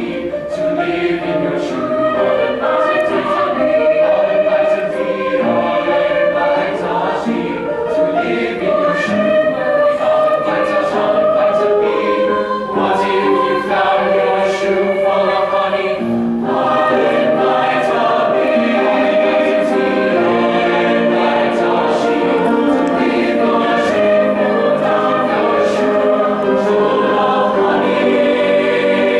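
Mixed choir of young voices singing in several parts, holding full chords that keep moving.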